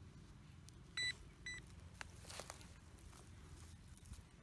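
Metal detector giving two short high beeps about half a second apart, the first louder: a signal over a metal target in the dug hole. A click and faint rustling of soil and grass follow.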